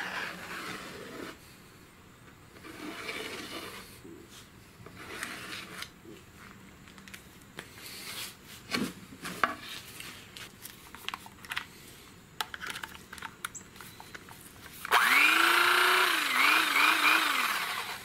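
Faint scratching and handling sounds of a marker tracing an outline onto upholstery foam. About fifteen seconds in, a handheld electric knife switches on and runs loudly for about three seconds; its motor pitch rises as it starts and then dips several times.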